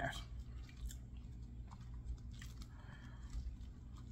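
Faint close-up chewing of French fries, with small soft mouth clicks and crunches.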